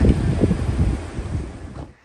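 Wind buffeting the microphone, a loud low rumble that fades over the last second and cuts off just before the end.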